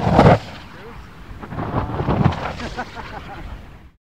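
Loud rushing bursts of air noise, one short burst about a quarter-second in and another longer one around two seconds in, with voices talking faintly; the sound cuts off at the very end.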